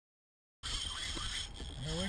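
Dead silence for about half a second, then sudden steady wind and water noise on an open-water kayak, with a thin steady high hiss over it. A man's voice starts right at the end.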